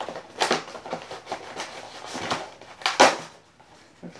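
Brown paper mailer being torn open and rustled by hand, with sharp crackles, the loudest about half a second in and about three seconds in.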